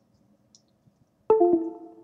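A short electronic chime of a few steady tones, about a second in, with a second note just after, fading within half a second. It marks the board's software update completing.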